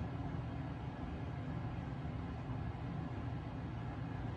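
Steady low background rumble with no other events.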